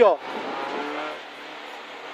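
Renault Clio N3 rally car's four-cylinder engine heard inside the cabin, pulling hard at speed on a special stage. Its level drops about halfway through.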